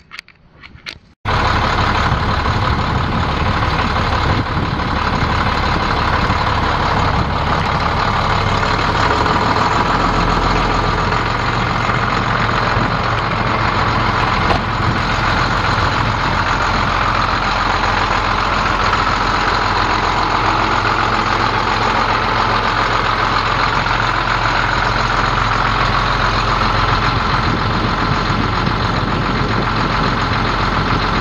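International DT466 7.6 L inline-six turbo diesel starting: a few clicks, then it catches suddenly about a second in and idles steadily.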